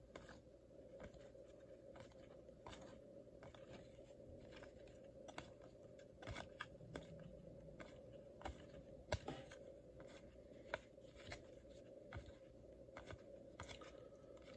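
Faint, irregular flicks and clicks of paper baseball cards being thumbed off one stack and slid onto another, over a faint steady hum.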